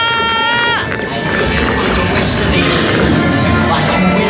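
Interactive dark ride's soundtrack: music with electronic sound effects. A steady, high electronic tone stops about a second in.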